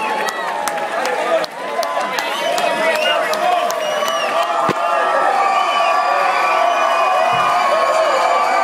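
Concert audience cheering: many voices shouting and whooping over each other, with scattered hand claps.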